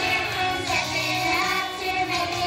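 Children's choir singing with a backing music track.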